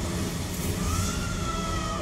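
A soldier's long held yell from the show's soundtrack, starting about a second in and sliding slowly down in pitch, over a steady low rumble.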